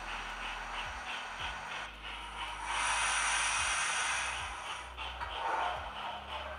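Steam locomotive sound from a model Battle of Britain class locomotive's HM7000 sound decoder, played through its small onboard speaker: soft chuffs about four a second as it runs slowly. A louder steady steam hiss sounds for about two seconds in the middle, then the chuffing resumes.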